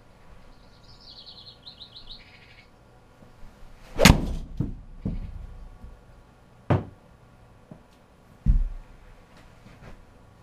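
A 6-iron striking a two-piece golf ball off a hitting mat, with the ball hitting the simulator's impact screen at once: one sharp, loud crack about four seconds in, a well-struck shot. A few lighter knocks and thuds follow, and a brief run of high chirps sounds about a second in.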